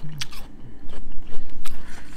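A person chewing a bite of crisp Pink Lady apple, with irregular wet crunches.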